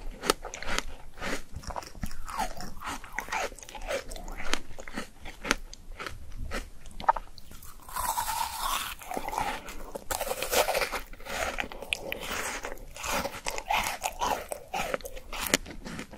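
Close-miked chewing with many small sharp crunches, then, about halfway through, a loud crunchy bite into a frozen white strawberry, followed by a few seconds of icy crunching as it is chewed.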